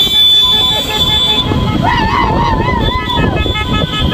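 Convoy of cars and motorcycles on the move, with vehicle horns sounding in long, steady blasts over the rumble of engines and road noise. A wavering pitched sound rises over it in the middle.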